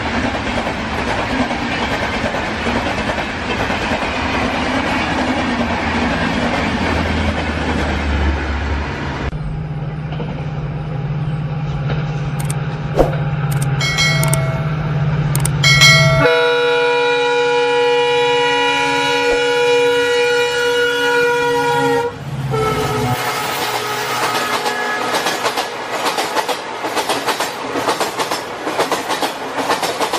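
Train sounds: a rushing, clattering running noise, short horn toots about two-thirds of the way through, then a horn held for about six seconds, followed by more wheel clatter. The sound changes abruptly several times, as if cut together.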